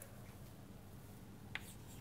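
Faint room tone with a low steady hum. About one and a half seconds in there is a single short tap of chalk on a chalkboard as writing begins.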